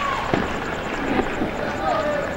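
Sound of a football match after a goal: players' shouts and calls over a steady background noise, with a few sharp pops about a third of a second in and again midway.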